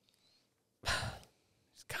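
A woman's single short, breathy sigh about a second in.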